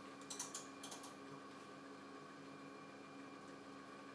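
A few faint clicks in two quick clusters, about a third of a second and about a second in, from the knobs being turned on the control console of a JEOL JSM-T200 scanning electron microscope. A faint steady hum runs underneath.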